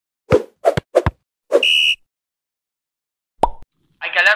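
Sound effects of an animated intro: three short thuds about a third of a second apart, then a brief high, steady tone lasting about half a second, and a single knock near the end.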